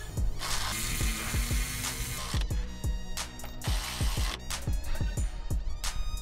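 Background music with a steady beat, over which a cordless electric ratchet runs in two bursts: one of about a second and a half starting half a second in, and a shorter one around four seconds in, running the control arm bolts in.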